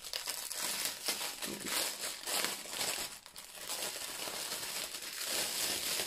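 Plastic wrap crinkling irregularly as hands handle plastic-wrapped bundles of diamond-painting drill bags.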